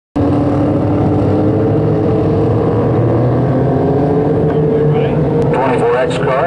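A pack of dwarf cars' motorcycle engines running together in a steady drone. A PA announcer's voice comes in near the end.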